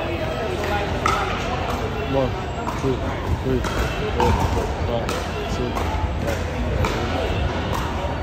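Unintelligible background voices of people talking, with sharp thumps recurring about once a second.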